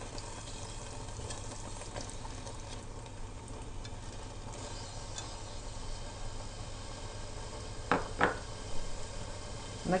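Vegetable mass for squash caviar simmering in an enamel pot, a steady soft bubbling hiss, with a spatula spreading tomato paste over it at the start. Two brief sharp sounds come about two thirds of the way through.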